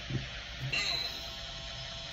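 The tail of a man's soft laugh, then a brief rustle of thin Bible pages under his hand, over a faint steady hiss and hum.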